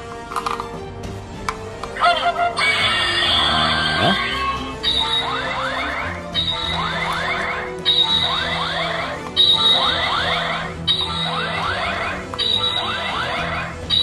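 Knock-off DX Ultraman Taiga Spark toy gauntlet playing an electronic sound-effect loop through its small speaker. Starting about two seconds in, a rising sweep with a steady high tone repeats about every second and a half over a low hum.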